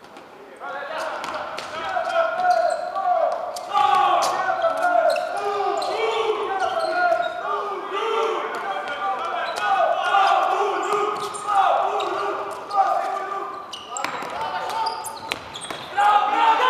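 Futsal being played on a wooden indoor court: sharp ball kicks and players' shoes on the floor, echoing in a large sports hall, with players calling out.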